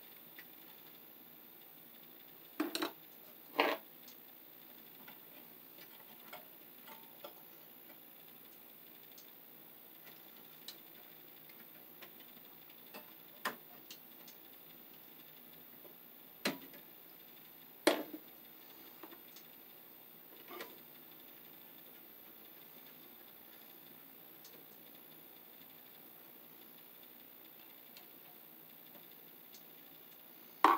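Scattered small clicks and knocks of hands working an outlet's wires and screw terminals and fitting it into a metal box, about a dozen over half a minute, the loudest around three and eighteen seconds in, over low room tone.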